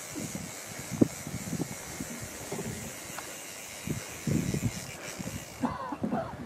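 Steady rush of river water around a wading angler, with a few brief low bumps.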